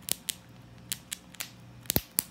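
Gray squirrel gnawing a nut, its incisors cracking the hard shell in short, sharp crunches, about seven of them, spaced unevenly with a quick double crack near the end.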